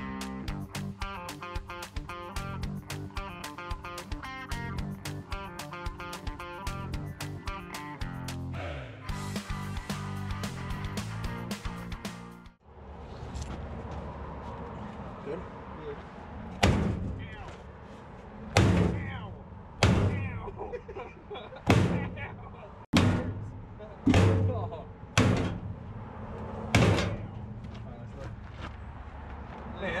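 Background guitar music until about 12 seconds in. Then about seven heavy hammer blows a second or two apart, beating a dented steel fender of a towed air compressor straight.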